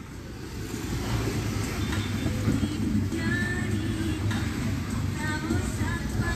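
Car engine and tyre rumble heard from inside the cabin as the car drives slowly along a wet street, building over the first second and then steady.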